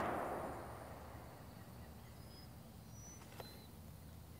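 The echo of a Hotchkiss M1914 machine gun burst in 8mm Lebel dying away over the first second. Then a quiet open field, with a few faint, short bird chirps and a faint tick about three and a half seconds in.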